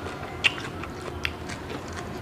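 Close-up chewing of a mouthful of spicy shredded-vegetable and crab salad: a few short wet mouth clicks, the sharpest about half a second in.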